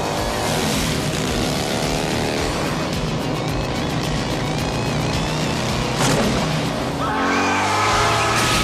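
A movie's action-scene soundtrack: car engines and squealing tires mixed with music. Gliding whines stand out at the start and again about seven seconds in.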